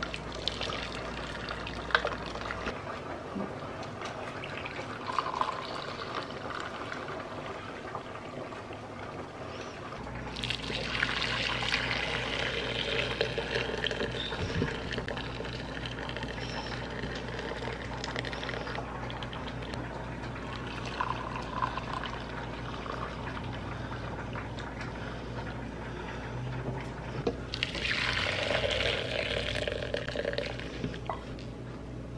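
Boiled vegetable dye water poured from a metal pot through a mesh strainer into a glass jug, a steady trickling pour. It comes in separate pours, the second starting abruptly about ten seconds in and louder, and a third near the end, with a few light clicks of spoon or pot against the rim.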